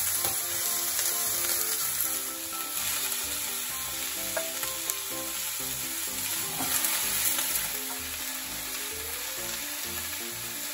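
Food frying in a hot pan, sizzling steadily, with a few faint clicks from the pan. A soft melody of background music plays underneath.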